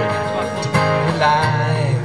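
Two acoustic guitars strumming a country-folk song played live through a PA, with voices singing between lyric lines.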